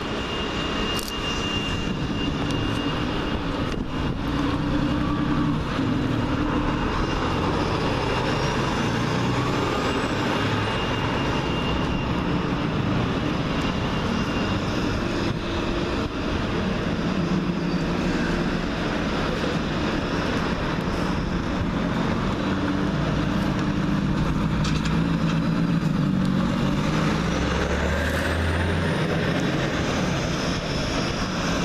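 Buses pulling out of a bus station exit with their engines running: first a coach, then a single-deck service bus. A faint high whine rises twice, and the engine rumble grows deeper and louder near the end as the single-decker comes out towards the road.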